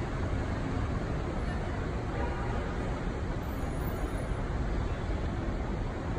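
City street ambience: a steady wash of traffic noise, heaviest in the low rumble.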